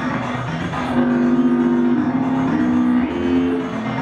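Live electronic music played on synthesizers and a Korg Electribe 2 groovebox: sustained synth notes that step to new pitches every second or so.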